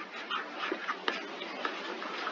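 Stylus scratching on a tablet screen in quick short strokes while handwriting words.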